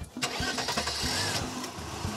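A Volkswagen Caddy van's engine starting a moment in and then running, with a rushing noise over its first second or so.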